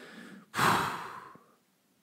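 A man blowing out a dismissive 'pff', a breathy exasperated sigh through the lips. It starts about half a second in and fades out over about a second.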